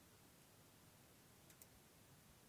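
Near silence broken by two faint clicks close together about a second and a half in: a computer mouse clicking the bypass switch on and off.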